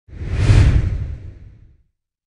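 A whoosh sound effect with a deep low end, the audio of a company logo sting. It swells quickly to a peak about half a second in, then fades away over the next second.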